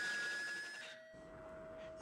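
Faint steady electronic tones: a higher one, then a lower one taking over about a second in.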